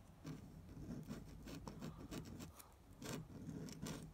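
Faint, irregular scratching of a metal dip pen nib without iridium tipping as it moves across paper writing letters, a little louder around three seconds in. The novelty finger-shaped nib glides more smoothly than expected for a dip pen.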